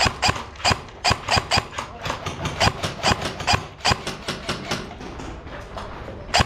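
Airsoft electric gun fired in quick single shots, a sharp crack several times a second in an uneven rhythm, thinning out near the end.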